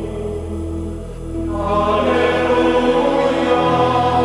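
A choir singing Gregorian-style chant in long held notes over a low steady drone; about one and a half seconds in, the voices swell and grow brighter as a new phrase begins.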